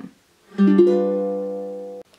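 Ukulele strummed once on a G7 chord about half a second in. The chord rings on and fades slowly until it cuts off suddenly.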